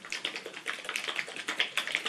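Small bottle of silver plating solution being shaken hard, giving a rapid, fairly even run of clicks and knocks as the liquid and bottle rattle, several a second.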